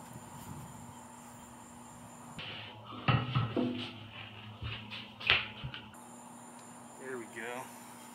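A few sharp knocks and bumps, the loudest about three seconds and five seconds in, over a steady background hiss.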